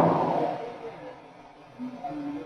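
A pause in a man's lecture: the last word's echo fades away over about a second, leaving faint room noise. Near the end comes a brief, faint sound of his voice before he speaks again.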